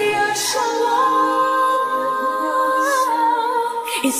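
Isolated female vocals singing a cappella, with no instruments, holding one long note through the middle.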